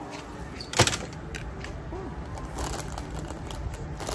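Handling noise from a hand-held phone: a sharp knock about a second in, then a few lighter clicks and rustles over a steady low rumble.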